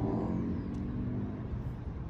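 A motor vehicle's engine running and fading away over the first second and a half, leaving a steady low background rumble.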